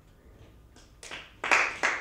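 A small audience starts applauding about a second in, after a moment of quiet. A few separate claps come first, then more hands join in and it grows louder.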